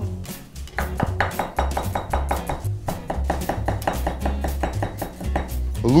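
Chef's knife quickly mincing garlic cloves on a wooden cutting board: a fast, even run of chops, about six a second, with a short pause near the middle.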